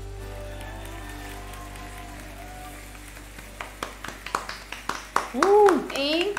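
The last held notes of a live pop-rock song recording fade out, then from about three and a half seconds in two people start clapping, irregular claps growing louder, with a short vocal cheer near the end.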